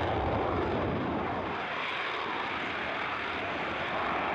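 A single-engine F-35 Lightning II stealth fighter's jet engine during takeoff and climb-out, heard as a steady rushing noise.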